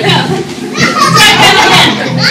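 Group of small children and adults, their voices overlapping in shouts and chatter as they play.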